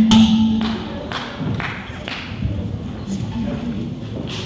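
Live band music with a held note that ends about a second in, followed by a lull of scattered thumps and taps over faint voices in the hall.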